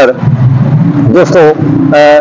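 A man speaking Urdu in a steady talking-to-camera monologue.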